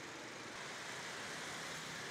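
Faint, steady hiss of distant city street traffic.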